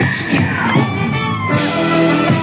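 Live band music with a brass section, played loud over a stage PA, with a sliding note in the middle.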